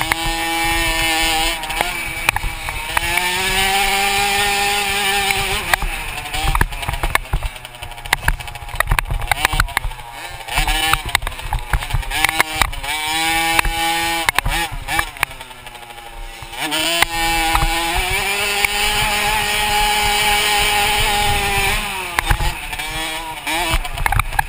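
Dirt bike engine revving up and down as it is ridden round a motocross track, climbing in pitch on the throttle and dropping off, with long held high-rev runs. Wind buffets the bike-mounted microphone, and sharp knocks come from the bumps.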